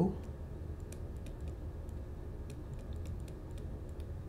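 Faint, irregular light ticks of a stylus tapping and stroking on a tablet screen as words are handwritten, over a low steady hum.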